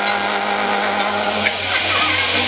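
Live jaranan accompaniment music in a stretch of sustained, buzzy held tones with a low hum beneath and no drum strokes.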